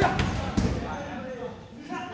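Roundhouse kick landing on a Thai pad: a loud smack right at the start, followed by a couple of lighter knocks within the first second.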